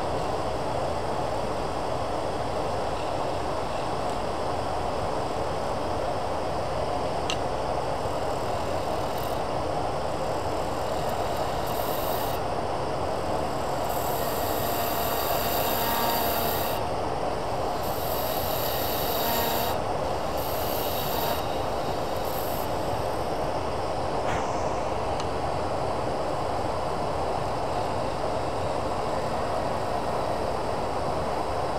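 Lathe running steadily while a hand-held turning tool cuts the spinning resin blank. Between about 12 and 21 seconds in, the cutting gets louder in several stretches as long plastic shavings fly off the blank.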